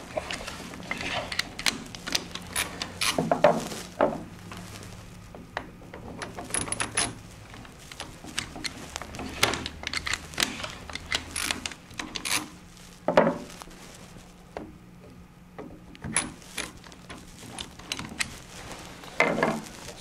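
Clear plastic model of a quick-jaw-change lathe chuck being worked by hand with a T-handle wrench: a string of irregular clicks, knocks and small rattles as the wrench is turned and a jaw is put back into the chuck.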